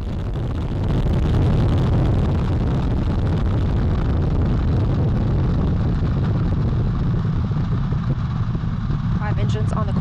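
NASA Space Launch System rocket at liftoff: its four RS-25 core-stage engines and two solid rocket boosters firing together as a loud, steady, deep noise that grows a little louder about a second in.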